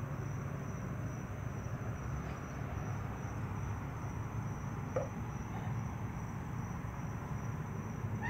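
Steady low hum with a hiss and a faint, steady high-pitched tone, with a brief faint blip about five seconds in.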